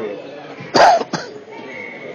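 A person coughing close to the microphone: one loud cough about three quarters of a second in, followed quickly by a shorter second cough.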